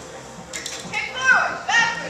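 A high-pitched voice calling out without words, two short squeals or whoops that fall in pitch, starting about a second in.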